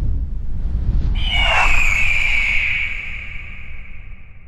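Logo animation sound effect: a low rumble, then about a second in a swish and a high whistling tone that slides slightly downward and slowly fades away.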